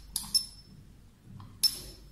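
Gold plasma handle of a B26 plasma skincare device discharging against the skin of a forearm once the foot pedal is pressed: three sharp snaps, two close together near the start and one about a second and a half in, each with a brief high ring.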